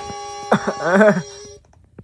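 Sound from a YouTube video playing on computer speakers: steady held tones that cut off suddenly about one and a half seconds in as the video is switched, with a voice saying "uh" just before and a single click at the end.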